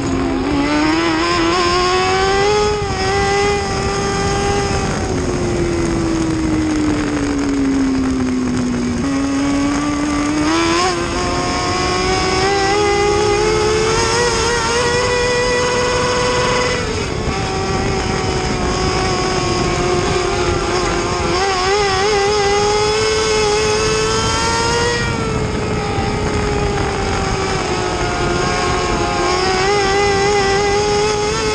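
Mini late model dirt-track race car's engine running hard, heard from inside the cockpit. Its pitch climbs and falls in long sweeps every several seconds as the throttle opens and closes around the track. There is a sharp jump up about a third of the way in and a sudden drop a little past halfway.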